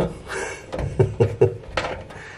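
A quick run of four or five metallic knocks and rattles from a cooker hood's sheet-metal cover and the screwdriver, as the last screw comes free and the loose cover is caught and held by hand.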